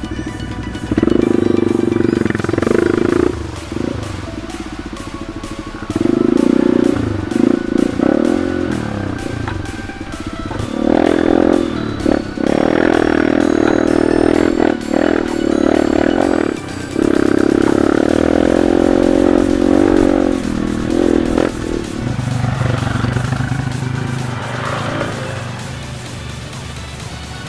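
Trail motorcycle engine revving and easing off as it rides a dirt trail, under background music with a steady beat.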